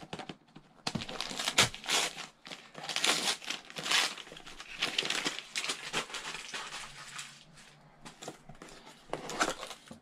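Gift-wrapping paper crinkling and tearing as a small wrapped box is unwrapped by hand, in irregular rustles and snaps. The rustles are busiest in the first six seconds and grow softer later, when the cardboard box inside is handled.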